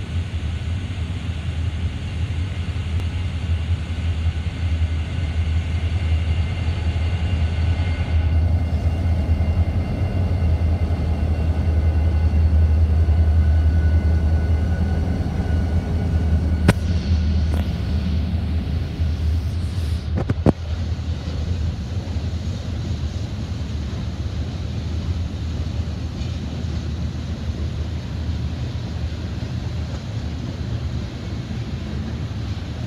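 Freight train passing close by: its diesel locomotives rumble past, then the freight cars roll by with a steady low rumble. Two sharp clicks come a little past the middle.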